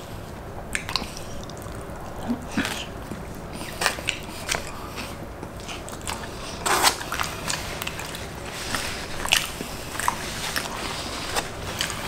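Two people chewing and biting mouthfuls of loaded carne asada fries, with irregular wet mouth clicks and smacks; the loudest comes about seven seconds in.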